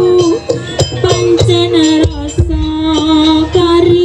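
Jaranan (kuda lumping) music: a loud, held melody line that wavers and steps in pitch over repeated sharp drum strokes.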